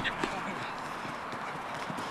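Outdoor football match play: faint footfalls and knocks of players running and touching the ball, under a steady outdoor hiss, with the end of a shout right at the start.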